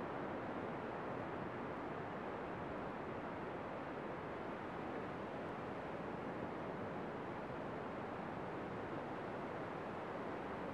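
Steady, even rush of ocean surf breaking on a sandy beach, mixed with wind.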